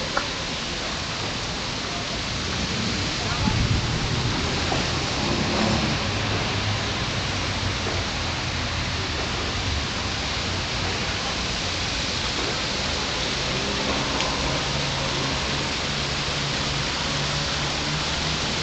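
Steady outdoor ambience: an even hiss with indistinct voices, and a low steady hum from about two-thirds of the way in.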